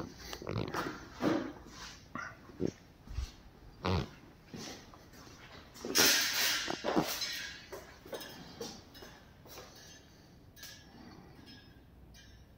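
A run of short, irregular sniffs and snuffles close to the microphone, the loudest and longest about six seconds in, tailing off in the last couple of seconds.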